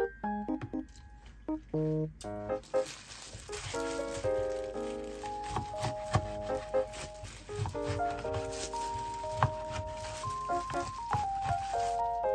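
Light melodic background music with notes changing every fraction of a second, over occasional soft taps of a kitchen knife slicing pork belly on a plastic cutting board.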